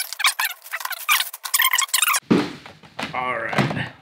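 Clear plastic bag crinkling and rustling in quick crackles as a CGC-graded comic slab is slid out of it. About two seconds in, a short fuller sound with a wavering pitch follows.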